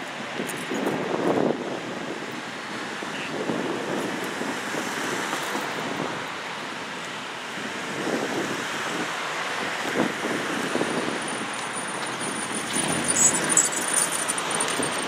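Cars driving past one after another on the road, a steady tyre and road noise that swells as each one passes, with wind buffeting the microphone.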